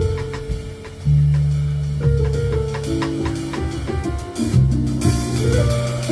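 Live jazz piano trio playing: plucked upright bass notes, chords on an electric stage keyboard, and a drum kit keeping time.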